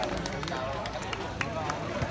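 Indistinct chatter of several people's voices in the open air, with a few light clicks scattered through it.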